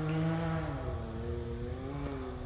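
Off-road vehicle's engine running steadily, its pitch dipping slightly about halfway and rising again near the end.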